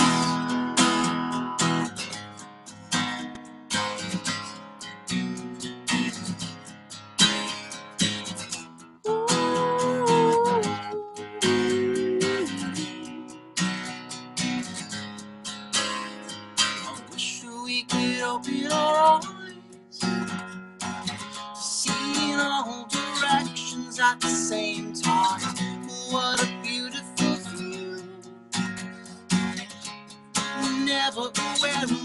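Acoustic guitar strummed steadily through an instrumental stretch of a live song, with a voice briefly joining in about nine seconds in.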